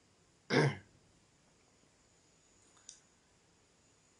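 A man clears his throat once, briefly, about half a second in. A faint click follows near three seconds in.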